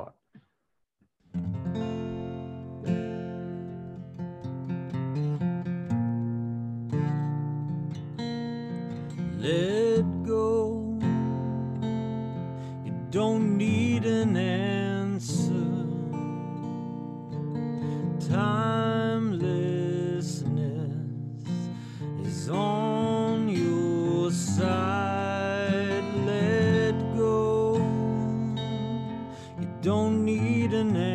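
A recorded song: acoustic guitar strummed under a sung mantra of repeated affirmations. The guitar starts about a second in, and the voice comes in about a third of the way through.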